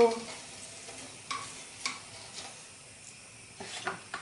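Breaded carrot cutlets frying in hot fat in a pan, a faint steady sizzle, with a few light clicks and scrapes of a spatula against the pan and plate as the cutlets are lifted out onto paper towel.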